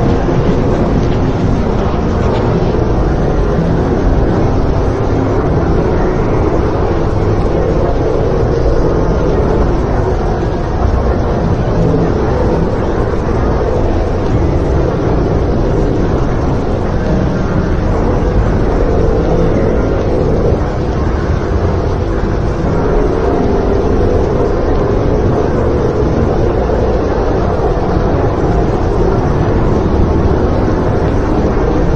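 Dense, loud, steady droning noise from a dark ambient soundscape track, thick in the low and low-middle range with slow swells and no clear melody or beat.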